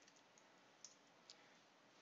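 Near silence broken by two faint computer-keyboard key clicks, about half a second apart near the middle.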